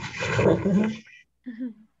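A person laughing, a harsh, noisy burst of about a second followed by a short voiced sound.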